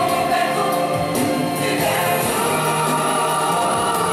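Gospel music: a choir singing, with long held notes.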